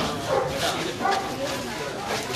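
A woman talking in a raised voice at close range, with men's voices from the crowd around her.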